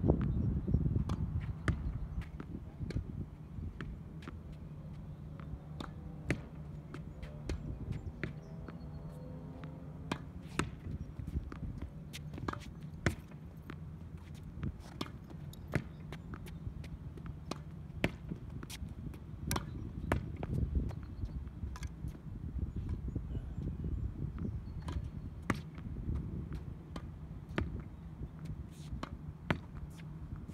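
Tennis ball rallied against a practice wall: an irregular string of sharp knocks, roughly one or two a second, from racket strikes, the ball hitting the wall and bouncing on the hard court. A low steady rumble runs underneath.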